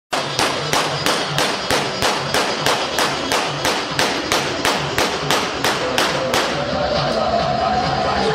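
Ankara Roman dance music (oyun havası): a drum beating hard, even strikes about three a second over a repeating low bass pattern, then a high melody line comes in with a rising bend about six and a half seconds in.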